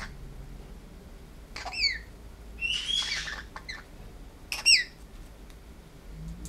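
Blue-headed pionus parrot giving three short calls, each falling in pitch. The middle call is rougher and the last is the loudest.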